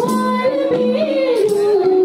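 A Nepali Teej folk song: a woman sings a melody of held notes that glide between pitches, over a steady lower accompaniment and regular percussion strikes.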